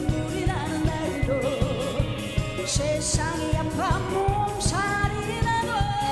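A woman singing a Korean trot song live with a band, over a steady drum beat.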